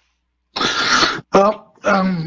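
A person clears their throat after a short silence, about half a second in, then starts speaking.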